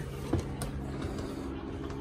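A steady low mechanical hum, with a light plastic click about a third of a second in as the handheld lighting remote is handled at its wall mount.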